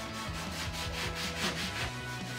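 A large kitchen knife sawing back and forth through the crust of a stuffed baguette, a quick, even run of rasping strokes.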